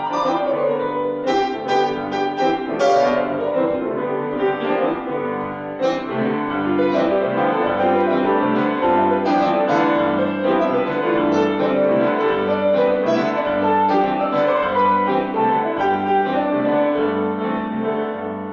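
Two Steinway grand pianos played together in a duet, a repeating bass figure under chords and quick runs.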